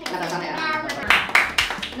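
A few quick hand claps in the second half, over talking.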